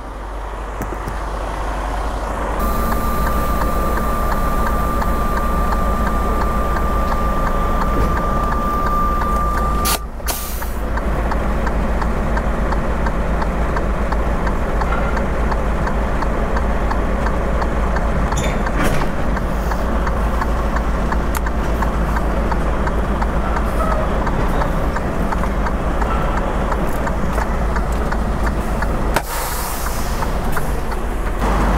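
Semi-truck tractor's diesel engine running as it backs under a trailer to couple. For several seconds near the start a steady hiss with a whistling tone sounds as air is let out of the tractor's suspension to lower the fifth wheel. A few short knocks come later, as the fifth-wheel jaws lock onto the kingpin.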